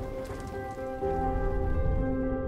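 Soft sustained music chords, moving to a new chord about a second in, over light rain falling on leaves with a faint patter of drops in the first half.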